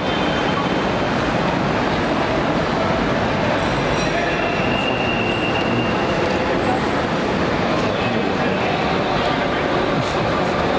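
Steady loud background noise with indistinct voices mixed in, typical of a busy airport kerb with traffic and people about.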